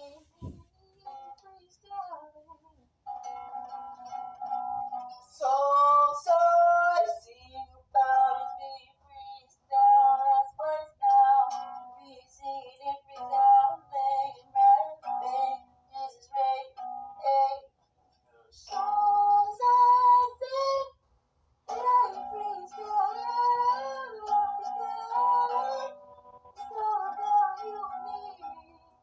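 A man singing in a high voice over a strummed nylon-string classical guitar, in short phrases with two brief pauses in the second half.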